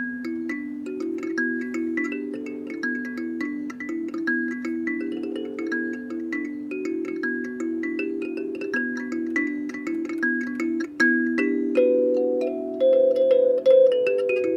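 Kalimba, a wooden box-resonated thumb piano with metal tines, played by thumb in an improvisation: a steady stream of plucked, ringing notes in a repeating pattern. It begins with a fresh attack of several notes at once, and in the last few seconds a higher note rings out louder over the pattern.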